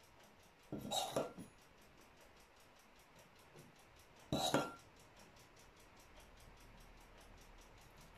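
A metal spoon clinking against the marinade bowl twice as it scoops marinade, about a second in and again at about four and a half seconds, with little else between.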